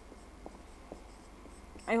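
Marker pen writing on a whiteboard: faint short strokes, with two slightly sharper marks a little under a second apart around the middle.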